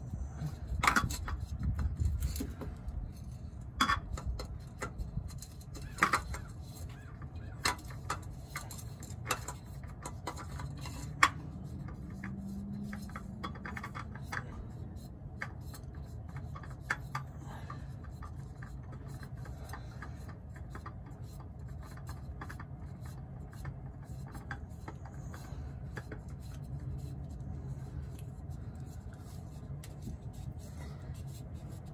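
Light clicks, taps and scraping of a spin-on oil filter being threaded on by hand, the handling sounds coming mostly in the first half, over a steady low hum.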